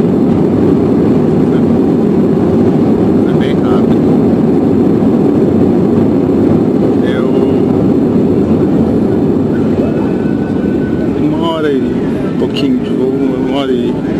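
Airliner cabin noise during the landing rollout, a few seconds after touchdown: a loud, steady low rumble of the engines and of the wheels on the runway. It eases slightly near the end as the plane slows.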